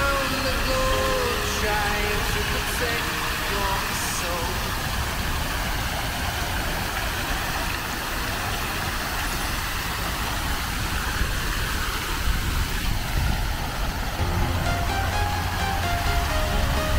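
A background song with vocals fades out over the first few seconds. A steady wash of outdoor noise follows, with traffic rumble and the splashing of a large fountain's jets. The music comes back in near the end.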